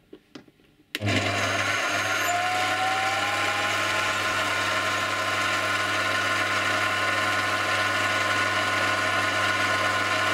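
Small hobby lathe switched on about a second in, its motor running with a steady whine while a twist drill bores into a white Delrin workpiece in the chuck.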